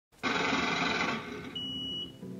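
Electronic logo sting: a steady, buzzy chord of many tones that starts sharply, holds for about a second and then drops to a quieter hum, with a thin high steady tone like a beep near the end.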